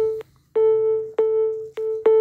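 A phone app's waiting tone while it processes a photo: one electronic, piano-like note at the same pitch repeated about twice a second, with a brief break about a quarter-second in.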